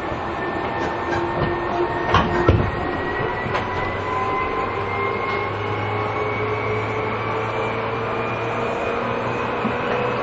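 Seibu New 2000 series chopper-controlled electric train running, heard from inside the car. The motor whine's several tones rise slowly in pitch as the train gathers speed over the rumble of the rails, with two sharp clicks from the wheels about two seconds in.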